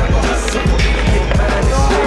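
Music with a steady beat, over a skateboard rolling on concrete.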